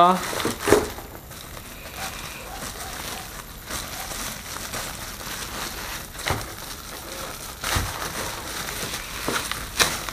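Plastic bubble wrap crinkling as it is handled and pulled open to unwrap a small metal part, with a few sharper crackles scattered through.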